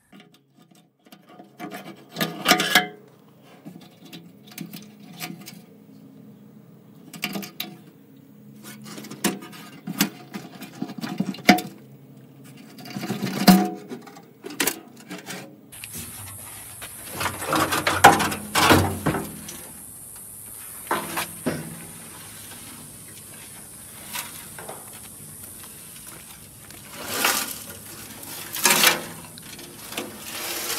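Irregular metal knocks, clanks and scraping as an old steel car fuel tank is handled and worked out of a 1965 VW Beetle's front trunk. The loudest clatters come in the second half over a steady hiss.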